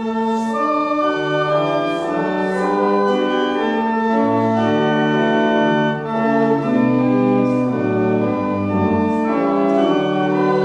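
Organ playing a hymn tune in full, held chords, the chords changing every half second to a second.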